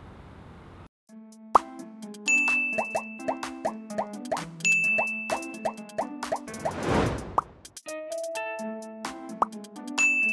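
Playful background music of short plucked notes that blip upward in pitch like plops, with a bright ding twice, and a rushing sweep that swells and fades a little before the end. It starts about a second and a half in, after a second of faint hiss.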